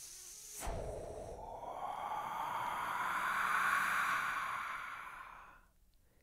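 A next-word transition sound effect: a noisy swell that rises in pitch and loudness, peaks about four seconds in and fades out just before the end, with faint steady high tones above it.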